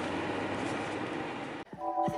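Steady road and engine noise inside a moving car's cabin, which cuts off abruptly about a second and a half in. Music with held notes begins just before the end.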